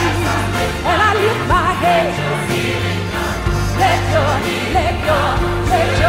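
Gospel worship song: a woman's solo voice singing ornamented runs with wide vibrato, backed by piano and sustained low bass notes.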